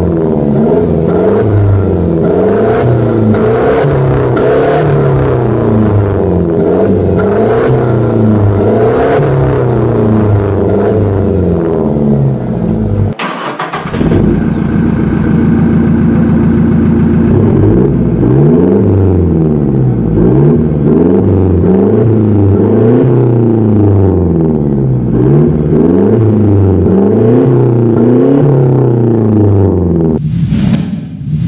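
2016 Toyota Hilux turbodiesel engine through an aftermarket turbo-back exhaust, blipped over and over, each rev rising and falling about once a second. About halfway through it settles to a steady idle for a few seconds, then the repeated revving starts again.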